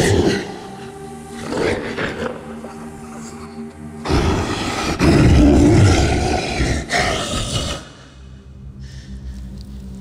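Horror film score: a sustained low drone of held tones. From about four to eight seconds in, a loud, harsh, rough surge rises over it and then falls away.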